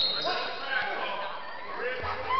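Indistinct chatter of spectators and players echoing in a school gymnasium, with a single basketball bounce on the wooden floor just under a second in.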